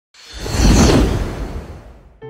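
Logo-reveal whoosh sound effect: a rushing noise with a deep low rumble that swells up within the first second and then fades away.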